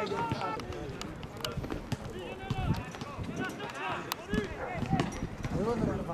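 Footballers shouting and calling to each other across an open pitch, with a few sharp knocks of a football being kicked, one about a second and a half in and another about four seconds in.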